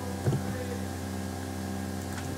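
Steady low electrical hum with evenly spaced overtones, picked up by the recording microphone, with a faint short sound about a third of a second in.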